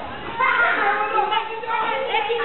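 Several children shouting and calling out in high voices while they play, louder from about half a second in.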